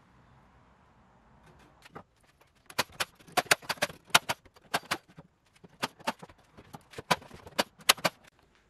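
Brad nailer firing into wood: about twenty sharp shots in quick runs, a few a second, starting about two seconds in and stopping near the end.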